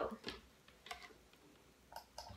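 A few faint, short clicks and handling noises from wired earbuds being picked up, one click about a second in and another just before the end, against near-quiet room tone.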